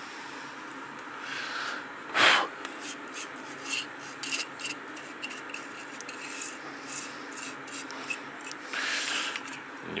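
Toothbrush bristles scrubbing a printed circuit board in short, scratchy strokes, brushing dust off it. A sharp puff of breath is blown onto the board about two seconds in, and a longer, softer blow comes near the end.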